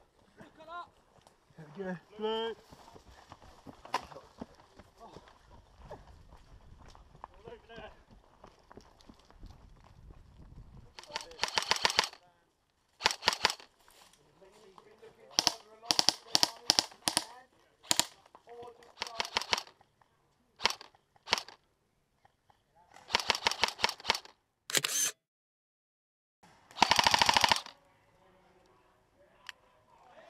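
Airsoft guns firing. The first ten seconds are quieter, then comes a string of short full-auto bursts, each a rapid, even run of shots, mixed with single shots.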